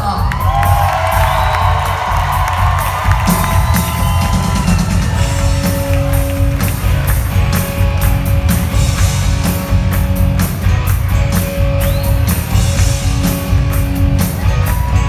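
Live rock band playing with drums, bass, electric guitar and keyboard, with voices whooping over the first few seconds. From about five seconds in, steady held notes sit over the beat.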